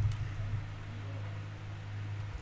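Steady low hum with a faint hiss: the background noise of a desk computer recording setup, with nothing else going on.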